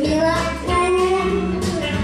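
A young girl singing a song into a handheld microphone over recorded backing music, her voice amplified through the stage speakers.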